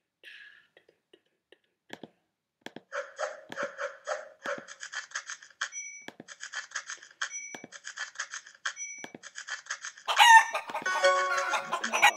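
Online scratchcard game's scratch-off sound effect: a rapid run of ticks as the symbols are revealed, with a short chime three times. Near the end a loud rooster-crow sound effect, the win signal.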